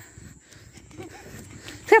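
Quiet outdoor background noise, with a faint, brief child's voice far off about a second in.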